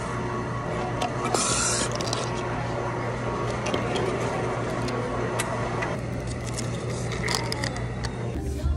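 Busy indoor ambience with a steady low hum, scattered clicks and clatter, and a brief hiss about one and a half seconds in.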